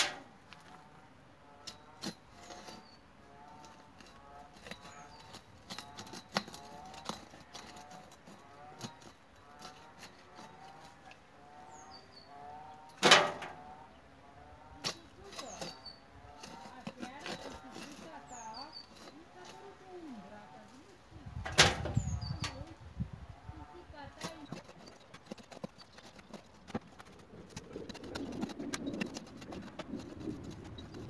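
Manual earth auger being worked in garden soil: scraping and grinding as it is twisted into the hole, with two sharp knocks, one about 13 seconds in and one about 22 seconds in.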